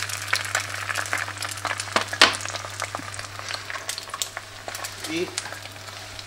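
Beaten egg frying in hot oil in a nonstick frying pan: a steady sizzle peppered with small pops and crackles, with one louder click about two seconds in.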